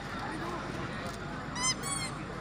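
Chatter from a crowd of spectators, with two short high-pitched honking squeaks in quick succession near the end.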